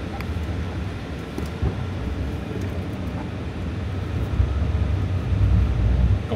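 Low rumble of road and tyre noise inside the cabin of a Denza Z9 GT being driven hard through a cone course, growing louder over the last second and a half.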